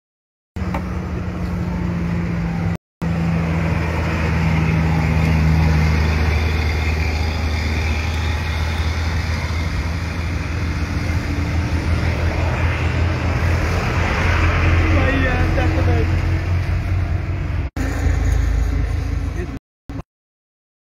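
A motor vehicle engine running steadily with a low hum, under a crowd's overlapping voices. The sound drops out abruptly for a moment a few times.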